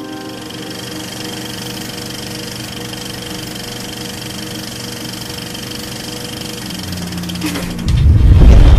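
Steady mechanical whirring and rattling of an old film projector sound effect, laid over a fading music tail, getting a little louder near the end.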